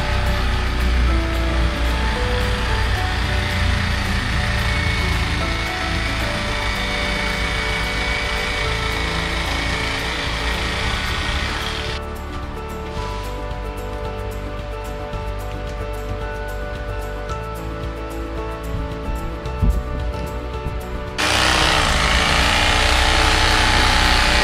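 Electric carving knife running as its blades slice the wax cappings off a frame of honey. It stops about halfway through and starts up again near the end.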